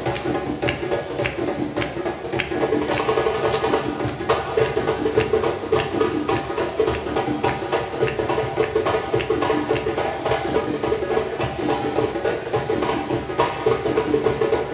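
Live hand drumming on a djembe with other percussion, playing a fast, steady rhythm of many strokes a second over sustained pitched accompaniment.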